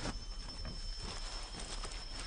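Tropical forest ambience: a faint steady high-pitched hum under soft, irregular clicks and rustles of movement on leaf litter.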